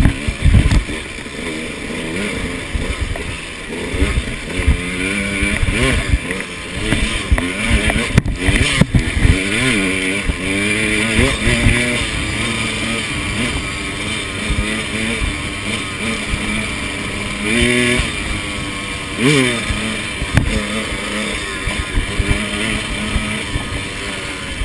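KTM 200 XC two-stroke single-cylinder dirt bike engine revving up and down over and over as it is ridden up a rocky trail, with sharp knocks from the bike striking rocks near the start and again about eight seconds in.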